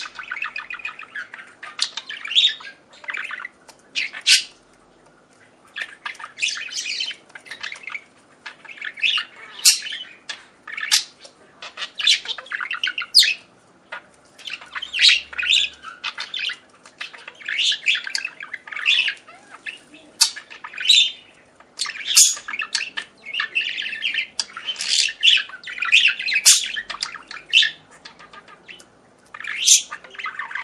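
Caged budgerigars chattering, a run of short, high chirps and squawks that come in clusters with brief pauses between them.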